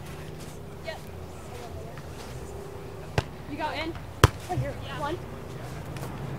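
A beach volleyball struck twice about a second apart, each a sharp smack: a serve, then the receiving player's forearm pass, which is louder. Short high calls from the players follow each hit.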